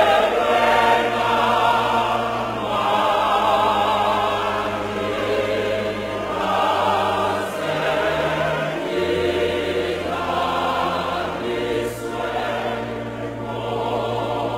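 Choir singing, many voices over long held low notes that change every few seconds.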